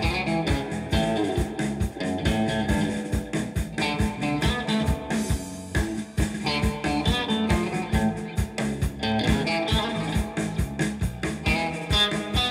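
Live blues band playing: electric guitar over bass guitar and drum kit keeping a steady beat.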